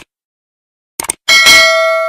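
Subscribe-button sound effect: a few quick clicks, then, a little over a second in, a bright bell ding that rings on and slowly fades.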